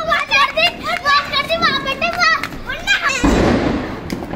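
Several children's voices, high-pitched and excited, shouting and chattering over one another. About three seconds in, a burst of hissing noise starts and slowly fades.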